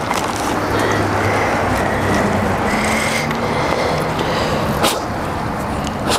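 A motor vehicle's engine running amid outdoor traffic noise, its hum shifting in pitch a few times. A sharp click sounds about five seconds in.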